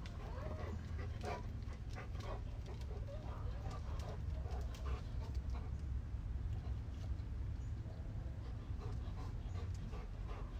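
Faint sounds of a dog close by, with a few short, quiet pitched noises and light scattered clicks, over a steady low rumble.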